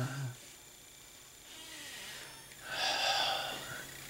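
A man's heavy breath, a snort-like exhale close to the microphone, starting about three seconds in and lasting about a second, over quiet room tone.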